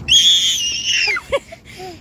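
A small child's high-pitched squeal, held for about a second and dropping off at the end, followed by a couple of short, quieter vocal sounds.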